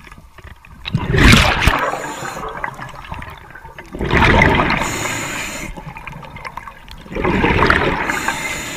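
Underwater breathing of a diver through a regulator: three exhalations, each a loud rush of bubbles about three seconds apart that fades over a second or two, with a fainter high hiss after each.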